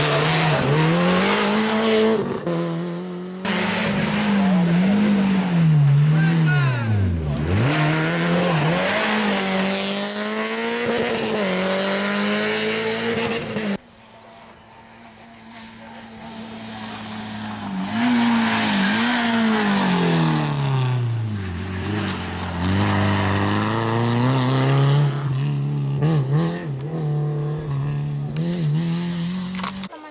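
Rally cars at full throttle on a gravel stage, their engine note climbing and dropping sharply with gear changes and braking. After an abrupt break about halfway, a Renault Clio rally car's engine swells in as it approaches and revs through its gears past the camera.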